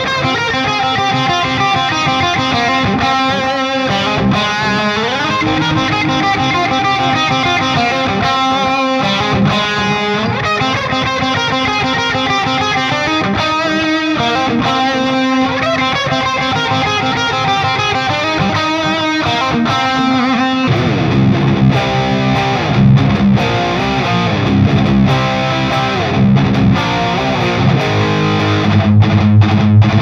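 Distorted electric guitar played through the All-Pedal Devil's Triad overdrive with its delay and reverb engaged, into a Driftwood Purple Nightmare amplifier used as a power amp. It plays melodic lead lines with held notes, then about 21 seconds in switches to louder, low, stop-start rhythm riffing.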